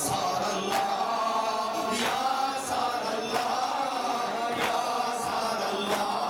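A man's voice chants a noha (Shia mourning lament) through a microphone and loudspeaker. Through the chanting runs a steady rhythm of sharp slaps, about three every two seconds: a crowd of mourners beating their chests (matam) in time.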